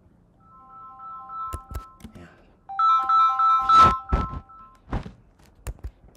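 An electronic alert tone: a chord of three notes pulsing rapidly, heard faintly at first and then again, louder, a little later. Several sharp knocks and a heavy thunk sound along with it.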